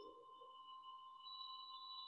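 Near silence: faint room tone with a thin, steady high tone held throughout.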